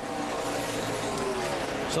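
NASCAR Nationwide Series stock cars' V8 engines at racing speed, a dense engine note whose pitch sinks slightly as the cars go by.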